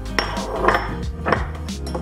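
Background music over about four short metal clinks and knocks, as a platinum coin ring and the steel die plate of a ring-reducing press are handled.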